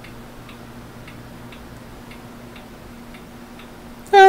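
Faint, even ticking, about two ticks a second, over a steady low hum.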